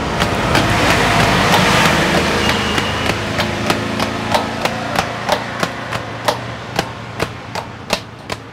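Hands slapping and working oiled porotta dough on a counter, making sharp slaps at an even pace of about three a second. For the first few seconds a passing road vehicle's engine rumbles under them, then fades.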